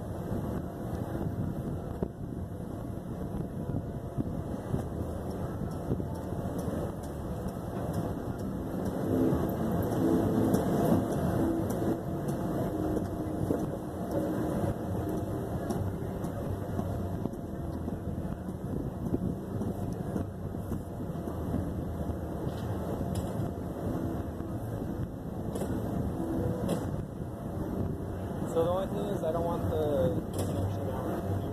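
Indistinct voices over a steady low rumble of outdoor noise, with a short gliding tone near the end.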